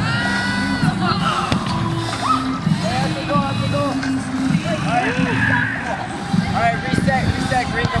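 Several voices calling and shouting across an outdoor field over background music, with no single clear word.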